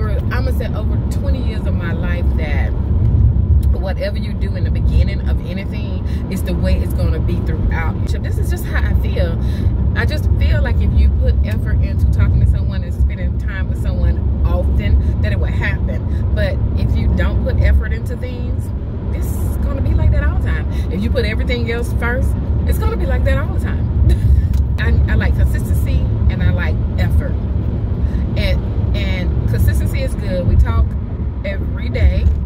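A woman talking inside a moving car's cabin, over a steady low road and engine rumble.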